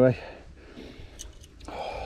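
A man's heavy breath out near the end, a pained sigh, after a short lull with faint background noise.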